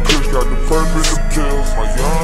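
Chopped-and-screwed hip-hop track: a slowed, pitched-down beat with heavy bass and drum hits about a second apart.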